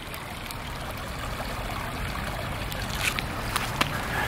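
Shallow creek water flowing steadily, with a few faint clicks near the end.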